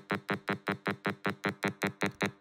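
Computer-synthesized 200 Hz tone built by summing sine waves in a truncated Fourier series of a sawtooth wave, playing as a steady stack of harmonics chopped into a stutter of about six short pulses a second. Its maker suspects it plays a bit oddly because of imperfect code and too few series terms.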